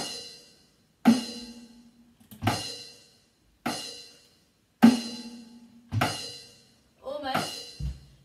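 Acoustic drum kit played slowly: five single strikes about a second apart, each a drum hit with a cymbal ringing over it, as a beat is worked through step by step. A voice is heard briefly near the end.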